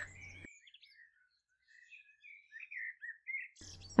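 Faint birdsong: scattered short chirps and twitters.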